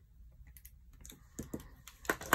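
A few faint, scattered clicks and taps of a handheld correction tape dispenser being run over a paper planner page and handled.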